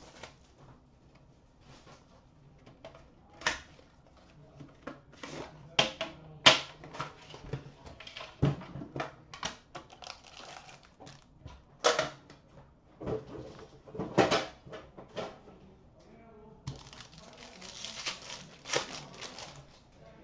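Irregular clicks and knocks from handling a metal card tin and hard plastic card holders on a glass counter as the tin is opened and emptied. Near the end comes a few seconds of denser, quick scratchy sliding as cards are handled.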